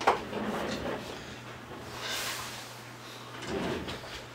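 Handling noises: a sharp knock at the start, then sliding and rustling sounds.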